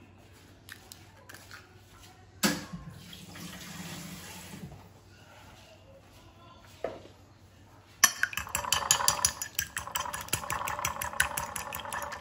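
Faint clicks of an eggshell being pulled apart over a ceramic plate, with a short rustling noise a few seconds in. About two-thirds of the way through, a fork starts whisking the egg in the plate: a rapid, steady clatter of metal on china that is the loudest sound here.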